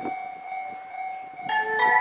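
A faint steady electronic tone, then about one and a half seconds in a bell-like electronic chime melody starts over the station's public-address speakers, several notes sounding together and more joining: a platform warning melody for an approaching passing train.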